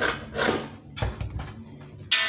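Scissors snipping through several layers of folded fabric, about three cuts half a second apart, each a short crisp crunch of the blades closing.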